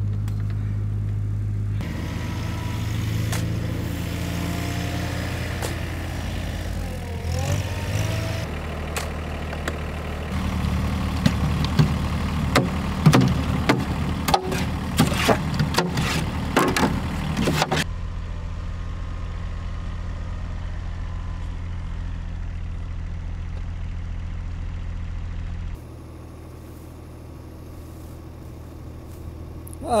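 Compact tractor's engine running steadily at idle. In the middle stretch there are many sharp scrapes and knocks of a shovel working soil and stones. Near the end the engine is quieter.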